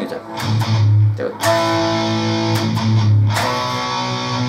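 Electric guitar playing chords, with short palm-muted chugs before the chord changes and a chord left ringing about a second and a half in.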